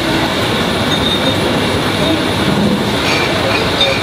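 Steady, loud rumbling background noise with faint voices mixed in.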